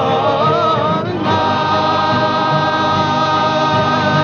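Cape Malay male choir singing a Dutch-language nederlandslied with guitar accompaniment. A wavering, ornamented vocal line gives way about a second in to a long held closing chord.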